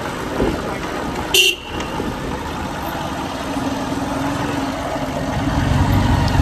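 Steady road and engine noise from a moving vehicle, with one short, sharp horn toot about a second and a half in; a steady engine hum carries on afterwards.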